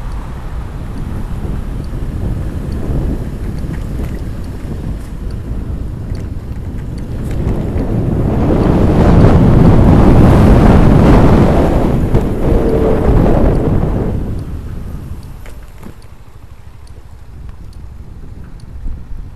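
Wind buffeting the camera microphone on a moving motor scooter, a rough low roar that swells to its loudest in the middle and dies back over the last few seconds.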